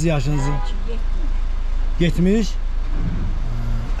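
A car engine idling with a steady low rumble, heard from inside the car, under short bursts of talking.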